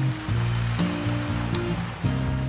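Classical guitar playing slow, held notes over the wash of ocean waves on a beach.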